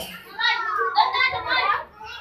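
Several children's voices calling out together in a crowd, starting about half a second in and fading near the end.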